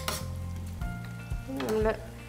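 Lamb and chickpea stew sizzling in a metal frying pan as it is stirred with a metal spoon, with a sharp clink of the spoon against the pan at the start.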